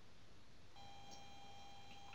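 Quiet room tone with faint hiss; about three quarters of a second in, a faint steady high electronic tone made of several pitches comes in and holds.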